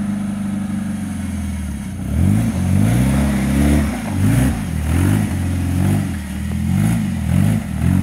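Jeep Wrangler YJ's 2.5-litre four-cylinder engine running steadily, then revved up and down repeatedly from about two seconds in as the Jeep crawls through a muddy rut under load.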